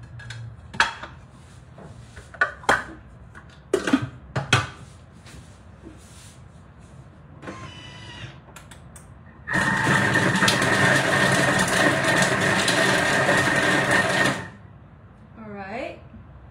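A few sharp knocks and clatters of a spatula against a plate and the Thermomix bowl, then the Thermomix's blade spinning fast for about five seconds, dicing onion, garlic and jalapeno, with a steady high whine over the noise, stopping suddenly.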